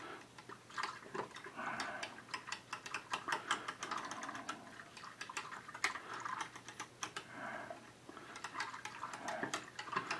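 A small whisk stirring au jus mix into water in a stainless saucepan, clicking and scraping rapidly and unevenly against the pot's sides and bottom.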